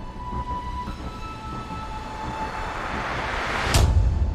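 Logo intro music: sustained held tones, then a rising whoosh that builds over the last two seconds into a sharp hit with a deep boom just before the end.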